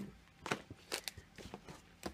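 Paper recipe cards being flipped and handled: a few short, faint rustles and flicks of paper.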